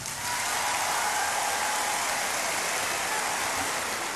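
Large concert audience applauding steadily at the end of a sung duet.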